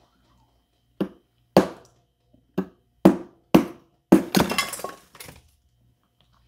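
Ice being bitten and chewed close to the microphone: five sharp crunches about half a second apart, then a second of rapid crunching and one smaller crunch near the end.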